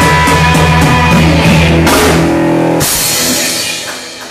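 Live blues-rock trio playing loud: electric guitar, electric bass and drum kit. About two seconds in the cymbals drop out under a held chord, a final full-band crash comes about a second later, and the sound then dies away as the song ends.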